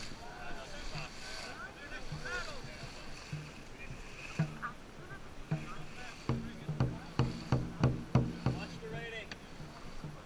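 Dragon boat drum beaten in a quick run of strokes, about four a second, near the end, over water rushing along the hull. Crew shouts rise and fall in the first few seconds.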